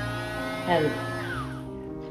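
Cordless Dremel rotary tool with a sandpaper drum, used as a dog nail grinder, running freely with a steady buzz, under background guitar music.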